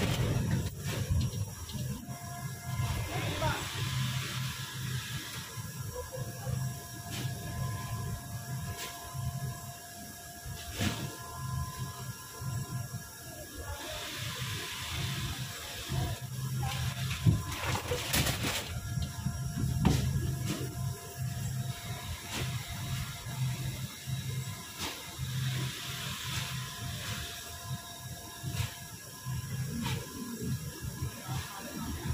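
Indistinct background voices and faint music, with a few sharp knocks and thuds as sacks of rice are loaded into the back of a van; the loudest thud comes a little past the middle.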